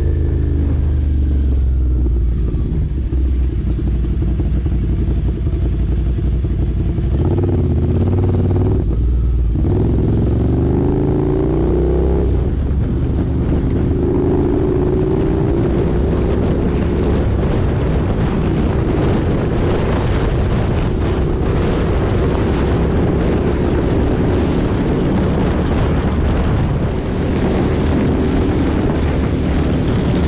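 Motorcycle engine heard from the bike's onboard camera, pulling through the gears. Its pitch rises several times in the middle of the stretch, with short drops between the climbs.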